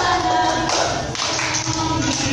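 Plastic cups tapped and knocked on a tile floor in a cup-game rhythm, with hand claps and women singing along.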